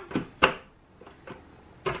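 Parts of an Omega Cold Press 365 juicer being clicked into place during assembly: a sharp click about half a second in, a few light ticks, and another click near the end as the part locks in.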